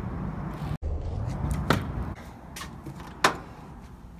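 Scooter wheels rolling on asphalt briefly. Then a sharp click and, a second and a half later, a louder clunk of a glass door's push bar and latch as the door is opened.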